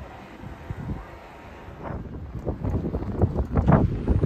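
Wind buffeting the microphone over outdoor street ambience, with irregular low knocks that grow louder in the second half.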